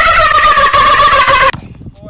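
A young man's loud, high-pitched scream held on one drawn-out note, sliding slightly down in pitch and cutting off suddenly about one and a half seconds in.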